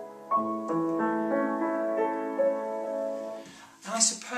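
Upright piano playing a slow, gentle passage of broken chords under a right-hand melody, a piano reduction of a solo harp part. The notes die away near the end.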